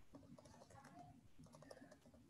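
Faint typing on a computer keyboard, quick irregular key clicks over a low background hum.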